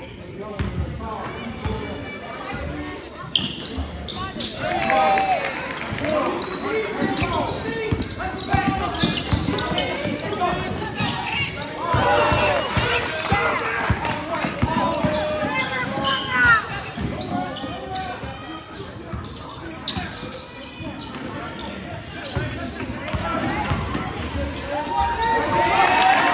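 Basketball bouncing on a hardwood gym floor during play, with repeated dribbles. Players and spectators call out over it, echoing in the large gym.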